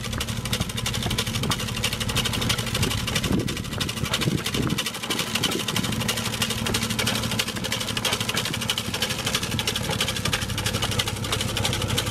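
BOSS TGS 600 tailgate salt spreader running behind a slowly moving GMC Sierra pickup: a steady low hum from the truck's engine and the spinner, over a dense patter of fine ticks as rock salt is flung onto the pavement.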